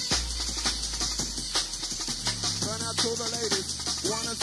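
Fast breakbeat rave music from a 1994 jungle/hardcore DJ mix, with a heavy bass line under a dense, quick drum pattern. A pitched line comes in over the beat about two and a half seconds in.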